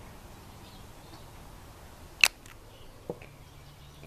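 Nail polish bottle and brush being handled: one sharp click a little over two seconds in and a fainter tap about a second later, over a faint steady hiss.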